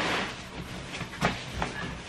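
Bedding fabric rustling and swishing as a quilted mattress protector is pulled over and smoothed onto a mattress, with a couple of soft knocks past the middle.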